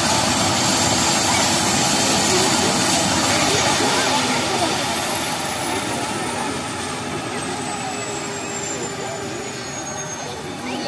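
Eurocopter AS365 Dauphin twin-turbine helicopter winding down on the ground after shutdown. The rotor and engine rush fades steadily while a thin high turbine whine falls slowly in pitch.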